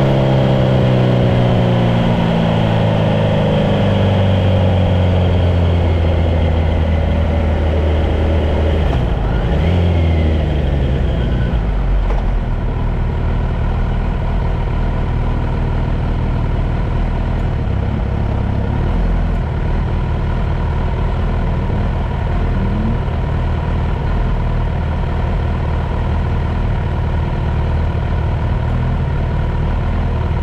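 Car engine heard from inside the cabin. Its note falls over the first several seconds as the car slows, then settles to a steady low idle for the rest of the time.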